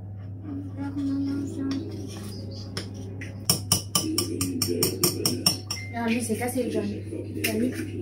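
A spoon clinking quickly against a bowl as a mixture is stirred, about five clinks a second for two seconds around the middle, with background music and voices murmuring underneath.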